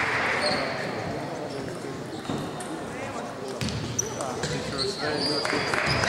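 Table tennis balls knocking sharply on bats and tables a few times, over a background of chatter from spectators in the hall.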